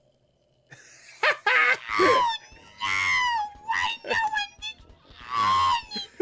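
A cartoon character's voice wailing and crying in anguish, a string of loud, wavering cries with bending pitch. They start after a short silence, and one long cry near the middle slides downward.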